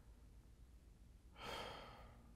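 Near silence, then about one and a half seconds in a man's soft sigh, a single breathy exhale.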